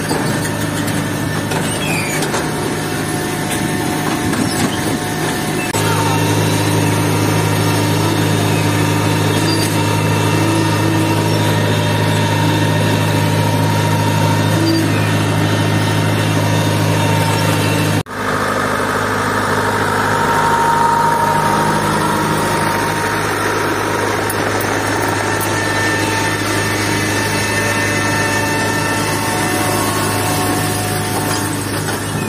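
Tractor engine running steadily as it pulls a tomato transplanter through the field, a low, even hum. The hum changes abruptly twice: it grows louder about six seconds in, and breaks off sharply just past the middle before carrying on.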